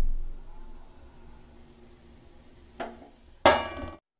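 Metal kitchenware being handled: a heavy knock at the start, a short sharp tap about three seconds in, and a loud ringing metallic clink near the end, over a faint steady hum.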